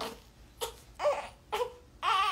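Three-week-old newborn making three short fussing cries, about half a second apart. Her mother takes the sound for the baby straining to push out gas.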